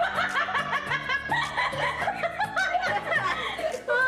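A woman laughing in a run of short chuckles, over background music.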